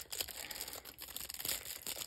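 Thin clear plastic sleeve crinkling softly and irregularly as a pen is pulled out of it by hand.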